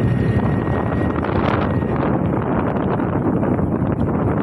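Wind buffeting the microphone on a moving motorcycle, over steady engine and road noise.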